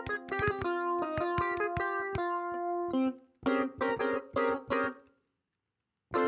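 GarageBand's Flying Clav software instrument, an emulated clavinet, played from a laptop keyboard. Held notes and chords for about three seconds, then a run of short, separate notes, then silence near the end.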